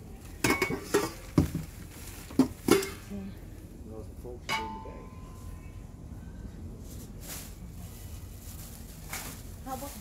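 Dishes and a steel bowl being handled in a plastic tub: a run of sharp clatters and knocks in the first three seconds, then a single metal clink that rings briefly about four and a half seconds in.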